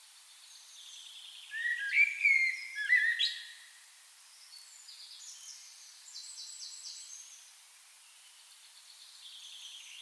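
Birds calling: a loud cluster of short sliding calls about two seconds in, then softer, higher chirps in quick series a little later, over a faint steady outdoor hiss.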